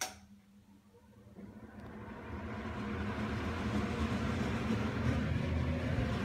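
A switch click, then an Imasu centrifugal ceiling exhaust fan spinning up from rest. Its airy whoosh and low hum build over about two seconds, then it runs steadily.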